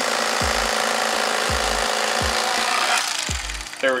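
Electric fillet knife running steadily as its blades cut a crappie fillet free along the skin, dying away near the end. A low, regular music beat plays underneath.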